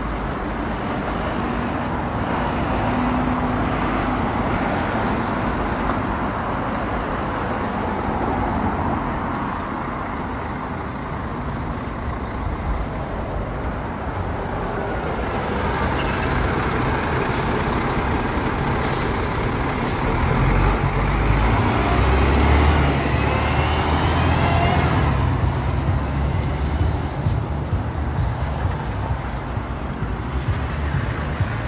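Steady road traffic passing on a busy street. About halfway through, a single-decker bus pulls past close by with a rising whine and a brief air-brake hiss, and its low engine rumble is loudest shortly after.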